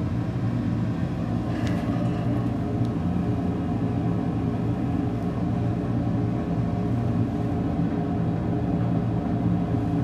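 Steady mechanical hum made of several steady tones, with one faint click a little under two seconds in.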